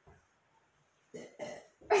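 About a second of quiet room, then short bursts of a woman's voice and a sudden burst of laughter at the very end.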